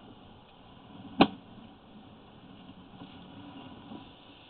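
A single sharp click about a second in, over a faint steady hum and hiss.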